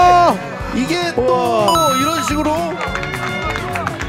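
Excited commentary voices over background music with a steady beat; a long held shout breaks off just after the start.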